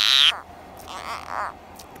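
Couch's spadefoot toad giving its defensive croak while held in the hand: a short, loud, high-pitched cry at the start, then a fainter one about a second in.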